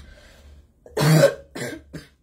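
A woman coughing: one loud cough about a second in, then two shorter, weaker ones.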